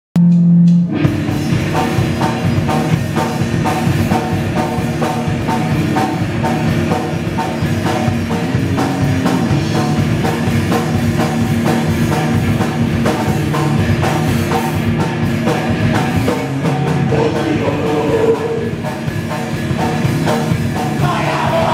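Raw punk / d-beat duo playing live at full volume: distorted electric guitar and drum kit. A short held guitar note opens the first second, then the full band comes in with a steady driving beat.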